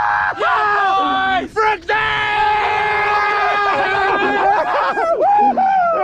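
Men yelling and whooping in long, drawn-out wordless shouts of excitement as a big fish comes aboard, with a short break about one and a half seconds in.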